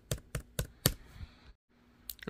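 Keys on a Dell Latitude 5500 laptop keyboard being tapped repeatedly to call up the boot menu: about four sharp clicks in the first second, then a few fainter taps, and a moment of dead silence near the end.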